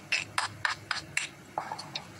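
A quick run of short rubbing and scraping noises from a hand moving right against the phone's microphone, about six strokes in just over a second.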